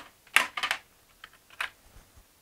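Power cables and their plugs being handled and set down in a tool case: a handful of short, light clicks and knocks, the loudest about half a second in.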